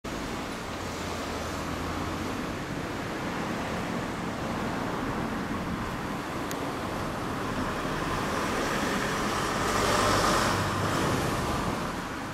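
Honda Super Cub's air-cooled single-cylinder engine, bored up to 75cc with Takegawa parts, running steadily. The sound swells briefly around ten seconds in.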